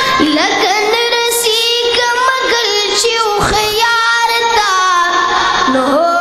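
A high voice singing a Pashto naat, holding long notes and bending them with ornaments.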